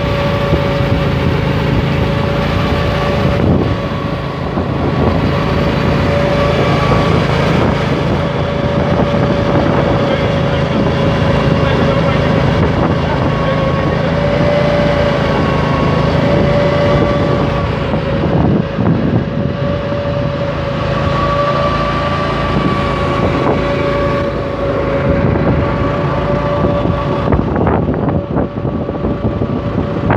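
Asphalt curbing machine running steadily as it extrudes a continuous asphalt curb: a constant motor drone with a steady whine that wavers slightly in pitch.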